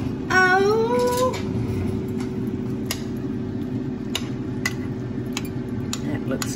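A metal spoon clicking against a glass baking dish of rice casserole, about six scattered light clicks, over a steady low hum. Near the start a woman gives a rising, drawn-out "ooh".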